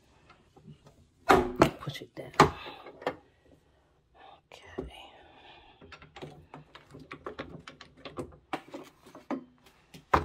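Lever-arm paper stack cutter clamping and cutting a stack of notepad sheets: a cluster of sharp clacks and knocks between about one and three seconds in. Softer rustling and small clicks follow as the paper and clamp are handled.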